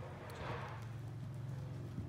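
A horse cantering, its hoofbeats faint and irregular on sand arena footing, over a steady low hum.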